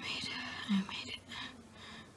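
A person's breathy whispering, with one short voiced sound about two thirds of a second in, then fading quieter.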